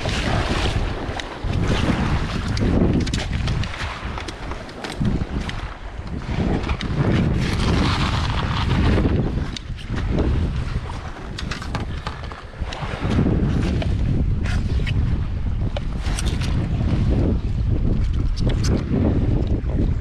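Strong, gusty wind buffeting the camera's microphone in uneven surges, with scattered knocks and rustles as the blown-over camera and tripod are handled.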